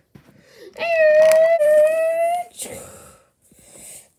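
A child's voice making a car-engine noise for a toy car: one long, high, nearly level note lasting about a second and a half, followed by a breathy hiss.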